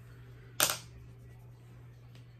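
A single sharp plastic click about half a second in, a makeup compact case snapping shut, over a low steady electrical hum.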